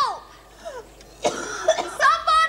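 A woman coughing harshly, a rough hacking cough starting a little over a second in, from someone who is being sick.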